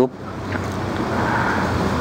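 A steady rushing noise that slowly grows louder across about two seconds, with no pitch or rhythm in it.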